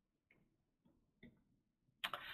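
Near silence with a few faint, short ticks.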